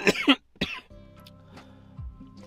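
A man's short run of hard coughs from inhaling cannabis vape smoke, then background music with steady held notes coming in about a second in.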